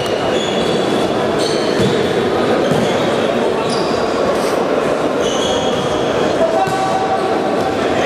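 Futsal being played in a sports hall: shoes squeak sharply on the court floor again and again, with the thud of the ball being kicked. Players' voices ring out over a steady din in the reverberant hall.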